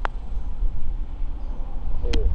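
A putter strikes a golf ball once with a short sharp click at the start. A steady low wind rumble on the microphone follows while the ball rolls toward the hole.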